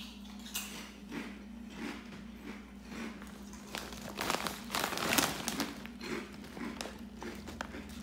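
A kettle-cooked potato chip bag crinkling as chips are taken out, loudest about halfway through, with crunchy chewing of the chips.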